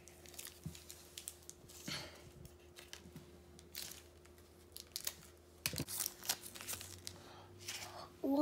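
Mini KitKat wrapper being torn open and crinkled by hand, in scattered short crackles, with louder clusters a little before halfway and about three-quarters through, over a faint steady hum.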